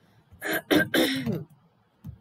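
A woman clearing her throat: a few rough, quick bursts over about a second.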